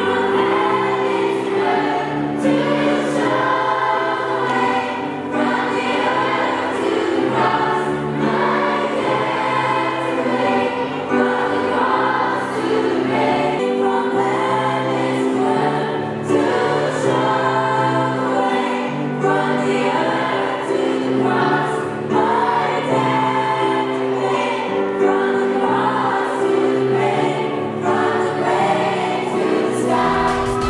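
Group of female voices singing a worship song, joined by children's voices, over steady instrumental accompaniment with a bass line.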